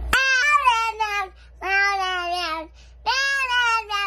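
A young child singing in a high voice: three long, drawn-out notes, each falling in pitch at its end.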